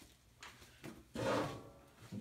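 Two light knocks, then a scrape lasting just over half a second as a person gets hold of a metal chair at a table to sit down.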